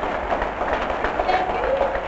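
Studio audience applauding between songs, a dense steady patter of clapping, with a voice heard over it.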